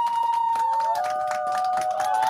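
Garbled audio from a video-call guest's glitching connection: steady held tones that step down in pitch about a second in, over constant crackling clicks.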